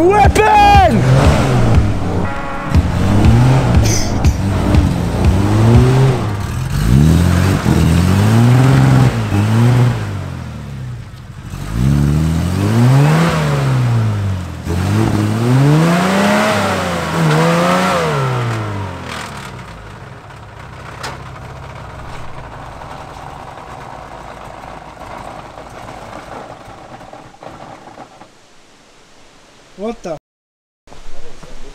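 Nissan GQ Patrol's engine revving hard and easing off over and over, its pitch climbing and falling every second or two as it claws up a muddy hill. After about twenty seconds it drops to a quieter, steadier running.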